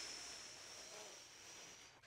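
A long, slow breath out: a faint breathy hiss that fades gradually and stops near the end.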